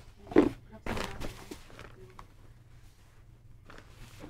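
Fabric bags stiffened with foam stabilizer being handled and set down on a table. There are a couple of soft thumps in the first second, then faint rustling and shifting.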